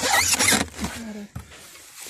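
Whole cabbage heads pressed together by hand in a plastic barrel: a short squeaky, rasping rub of leaf on leaf lasting about half a second, followed near the middle by a small click.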